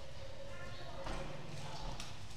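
People's voices talking in the background, with light clicks or knocks in between.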